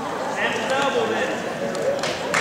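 Indistinct voices shouting and talking over crowd chatter in a gymnasium, with one raised voice near the start.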